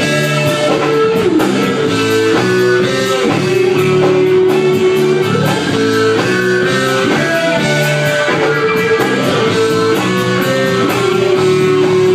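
Live rock band playing an instrumental passage: electric guitars and keyboards over a steady beat, with a lead line of long held notes that slide up and down in pitch.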